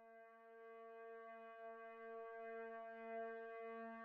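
A single sustained, horn-like note at a steady low pitch, swelling in gradually from silence with no break.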